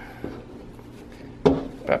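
One sharp knock on a wooden board about one and a half seconds in, with a faint click earlier, as acoustic foam panels are fitted onto a birch plywood backing board.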